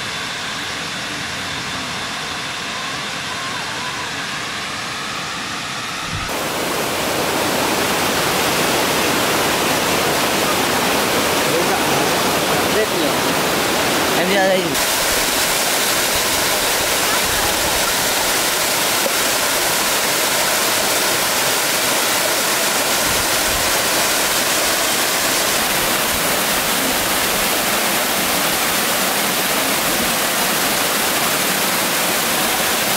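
Waterfall rushing: a steady, even noise of falling water. It is quieter for the first six seconds, then comes in loud and full.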